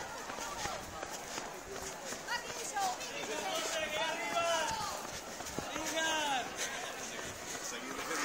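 Spectators' voices calling out along a race course, not close to the microphone, over the running footfalls and jostling of a runner carrying the phone.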